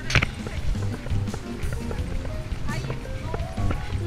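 Footsteps on a dusty dirt path with an uneven low rumble of wind on the microphone, and faint music underneath.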